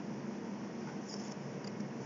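Steady low room hum with a few faint, short clicks from a computer mouse being worked at the desk.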